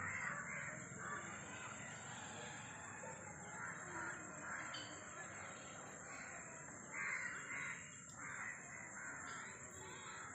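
Crows cawing again and again, calls overlapping, loudest about seven seconds in.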